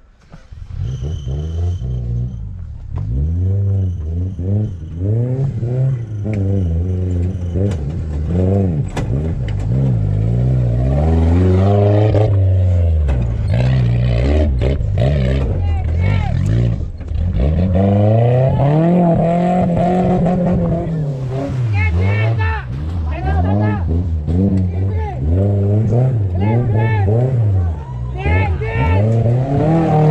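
Small off-road 4x4 pickup's engine revving hard and repeatedly, the pitch climbing and dropping again and again as it drives under load over steep dirt mounds. The engine grows louder over the first ten seconds or so as it draws nearer.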